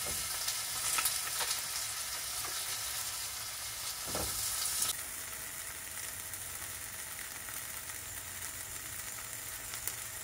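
Sliced chicken breast and tomato slices sizzling in a nonstick frying pan over a gas flame, with a few light knocks as slices are set into the pan. The sizzle turns quieter and duller about five seconds in.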